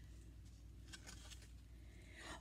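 Near silence, with a few faint soft taps and rustles about a second in as a cardboard board-book page is turned.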